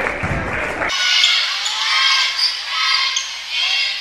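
Basketball game sounds in a school gym: many short, high-pitched squeaks, typical of sneakers on a hardwood court, over crowd noise. The sound changes abruptly about a second in, at an edit between games.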